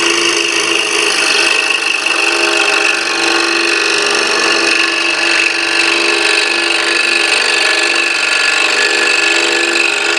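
Scroll saw running with its fine blade cutting a quarter set in a small wooden holder: a steady buzz with a high whine throughout.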